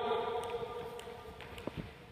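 Faint footsteps of a sprinter driving out of a crouch start and running on a sports-hall floor: a few light, irregular taps over a steady faint hum.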